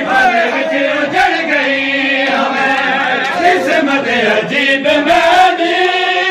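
A group of men chanting a Muharram noha lament together, with sharp slaps of matam (hands striking bare chests) cutting through at uneven intervals.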